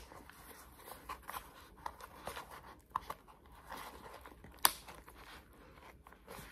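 Faint crinkling and small clicks of a plastic cone collar (e-collar) being handled as its fastening is worked loose, with one sharper click late on.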